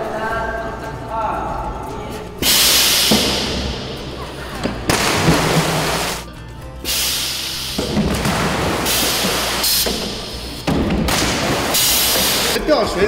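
Splashes into a swimming pool, about four, each starting suddenly and loud, as people are thrown into the water by ejector chairs at the pool's edge. Music plays underneath.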